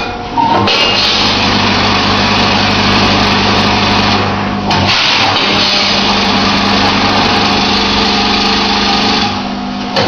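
Grain weighing and packing machine running: a steady electric hum with the hiss of grain pouring down the steel funnel into a bag. It goes in two fill cycles of about four seconds each, dropping off briefly about halfway through and again near the end.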